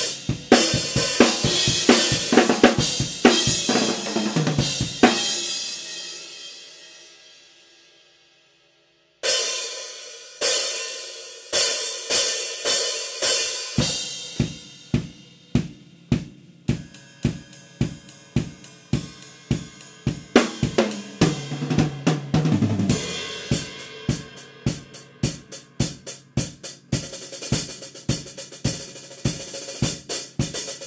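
Acoustic drum kit played hard: kick, snare, hi-hats and cymbals in a busy pattern. About five seconds in, the playing stops and a cymbal rings out and dies away, then after a brief silence the kit comes back in with a steady beat. Around two-thirds of the way through there is a tom fill running down in pitch.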